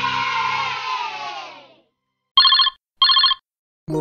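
Background music fades out, then a telephone rings twice: two short trilling rings about half a second apart. New music starts near the end.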